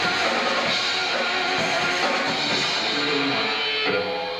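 Live rock band playing with electric guitar and drum kit, in the closing bars of a song.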